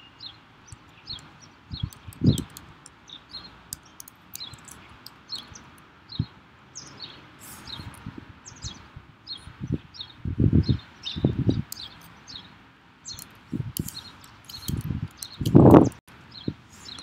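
Typing on a computer keyboard: a run of light, irregularly spaced key clicks, with a few dull low thumps, the loudest one near the end.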